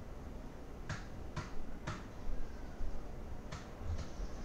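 Computer mouse button clicking: three quick clicks about half a second apart, then one more a second and a half later.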